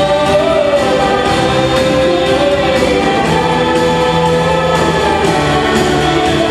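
Live music: a vocal ensemble and lead singers sing held notes together, backed by a band with acoustic guitar and drums.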